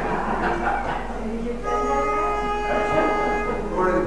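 A pitch pipe blowing one steady note for about two seconds, about a second and a half in, to give a barbershop quartet its starting pitch; low talk comes before it.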